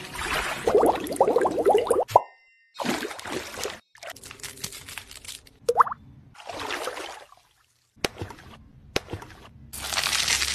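Close-up wet, sticky squelches and plops of thick gel skincare products being handled: a jelly face mask spread with a silicone brush, then hydrogel eye patches lifted from a jar, in several short clips cut abruptly together. A brief rising plop a little before the middle is the loudest sound.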